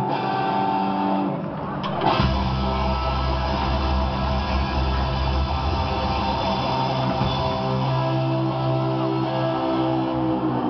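Punk rock band playing live with electric guitars, bass and drums, no vocals. For the first two seconds the guitars ring out with little low end, then a drum hit brings the bass and drums back in and the full band plays on.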